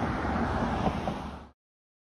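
Steady outdoor noise of wind on the microphone with a low rumble, which cuts off suddenly to dead silence about one and a half seconds in.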